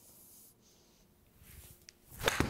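Near silence: studio room tone with faint rustling that builds toward the end, and a brief faint tick just before the end.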